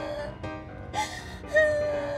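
A woman crying, with a gasping, sobbing breath about a second in, over background music that sets in louder with a long held note near the end.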